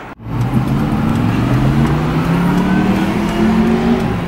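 Car engine accelerating, heard from inside the cabin, its pitch rising steadily for several seconds.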